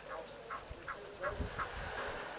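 A run of short, falling animal calls, about three a second, with a low rumble in the second half.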